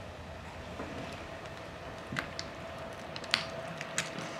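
Quiet handling sounds from hands working in a dead shearwater chick's opened stomach, with a few small sharp clicks, over a faint steady hum of room tone.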